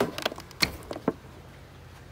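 A quick run of sharp clicks and knocks during the first second, from a green plastic pluggable terminal-block connector and its wires being handled as it is unplugged from a hydroponic dosing controller.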